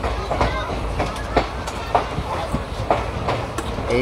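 Train running on rails: a steady low rumble with several sharp clacks of wheels passing over rail joints.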